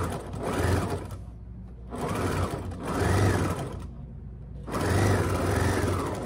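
Electric domestic sewing machine stitching through fabric in three short runs. Its motor speeds up and slows down within each run, with brief pauses between them.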